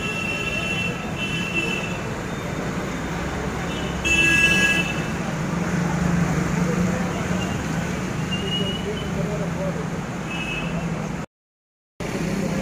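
Street traffic noise with vehicle horns: a short horn near the start and a louder honk about four seconds in. The sound cuts out briefly just before the end.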